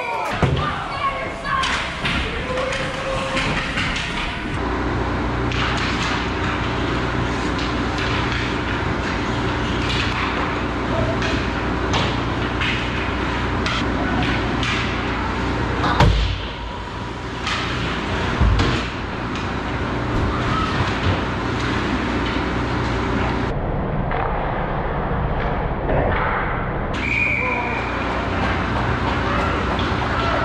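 Ice hockey being played on an indoor rink: skates scraping the ice and sticks and puck clacking, with two heavy thuds about halfway through, over voices from the rink.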